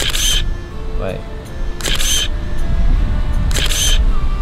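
Camera shutter sound from the drone's phone app as photos are taken, three identical clicks about two seconds apart.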